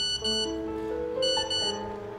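Background film music with sustained keyboard-like notes, overlaid by two pairs of short high electronic beeps, a mobile phone's text-message alert.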